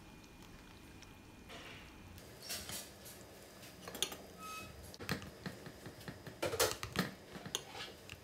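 A whisk stirring a thin flour batter in a glass bowl: faint swishing, with a few sharp taps of the whisk against the bowl in the second half.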